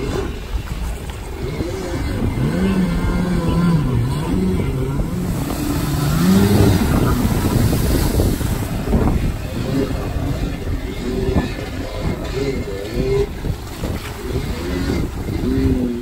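Stand-up jet ski engine revving up and down in repeated rises and falls over the rush and splash of water as the craft carves through turns, loudest around the middle.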